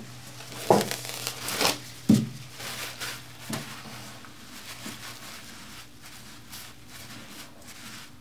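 Paper towel crinkling and rustling as it is pressed and rubbed over textured alligator leather to wipe off excess dye wax. A few sharp rustles come in the first few seconds, then softer, scattered rubbing.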